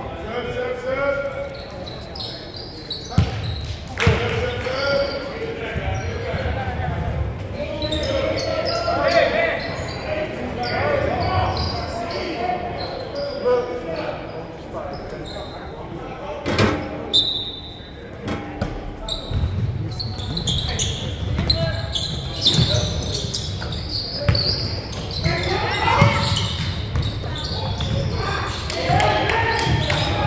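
Basketball bouncing on a hardwood gym floor, a few sharp bounces standing out, amid the echoing voices and calls of players and spectators in a large gym.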